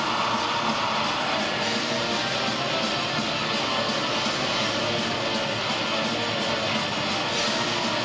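Pagan metal band playing live: distorted electric guitars strumming over drums at a steady volume, recorded from the audience.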